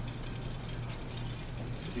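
Steady room noise: an even hiss with a constant low hum underneath.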